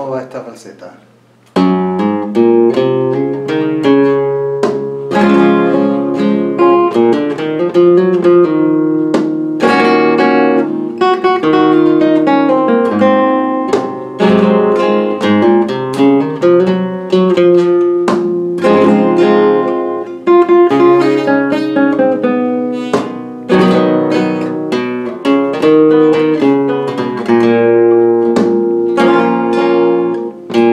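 Flamenco guitar playing a falseta of Fandangos de Huelva in the E position (por mi), with plucked melodic runs and chords. It starts after a short pause, about a second and a half in.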